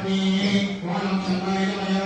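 Devotional mantra chanting held on one steady pitch, with a brief break about a second in.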